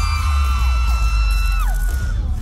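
Loud, bass-heavy dance music played over a concert sound system, with an audience's high, held screams over it. The screams slide down and die away near the end.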